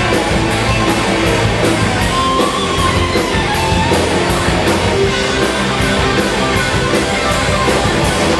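Live rock band playing an instrumental passage: electric guitars, bass and drums with a steady cymbal beat. A guitar holds a high note about two to three seconds in.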